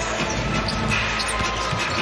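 Live basketball game sound in an arena: steady crowd noise with music playing over the PA, and a ball bouncing on the hardwood court.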